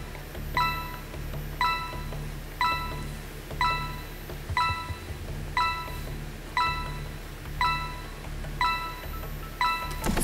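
A game-show countdown timer pings once a second, a short bell-like tone each time, over a steady low music bed. It marks the ten seconds the contestants have to answer running out.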